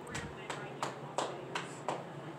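A run of six sharp, evenly spaced knocks, about three a second.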